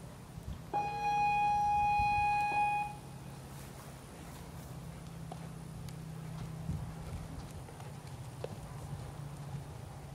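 A signal buzzer sounds once, a steady single-pitched tone lasting about two seconds, typical of the start signal for a show-jumping round. After it come faint hoofbeats of a horse on arena sand.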